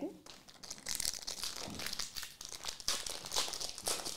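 Foil wrappers of Upper Deck Marvel Annual trading-card packs crinkling as they are handled, an irregular crackle.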